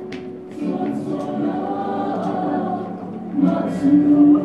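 A group of voices singing long held notes together, coming in about half a second in and growing louder near the end.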